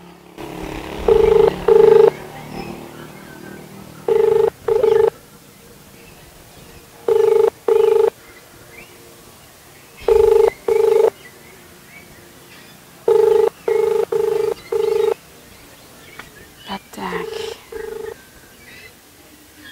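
Phone ringback tone playing from a smartphone's loudspeaker: pairs of short beeps about every three seconds while the call rings unanswered.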